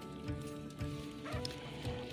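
Background music with long held notes, playing quietly between stretches of talk.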